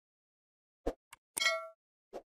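Subscribe-button animation sound effects: a click, a faint tick, then a short bell ding whose ringing tones fade within a fraction of a second.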